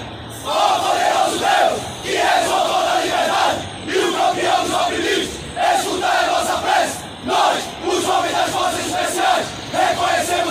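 A large group of men shouting a rhythmic chant in unison, a war cry delivered in short shouted phrases of about a second each, with brief gaps between them.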